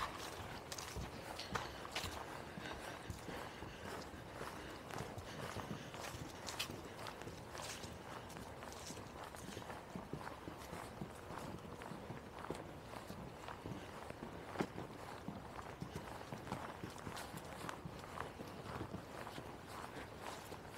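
Footsteps of people walking over dry fallen leaves: a steady run of faint, irregular steps.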